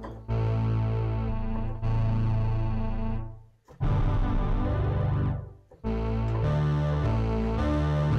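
Roland Alpha Juno 2 analogue synthesizer playing its Fat Synth patch with the sub-oscillator turned up, giving a heavy low end. It sounds in three held phrases of two to three seconds each, with short breaks between them.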